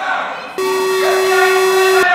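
An electronic buzzer in a parliament chamber switches on abruptly about half a second in and holds one loud, steady tone, over the fading raised voices of members.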